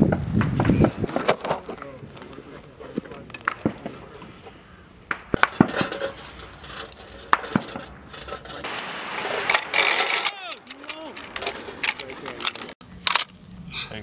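Scattered sharp metallic clicks and clinks of a linked machine-gun ammunition belt and metal gear being handled. Voices run underneath.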